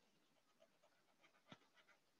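Near silence: room tone with a few faint, short ticks, the clearest about halfway through.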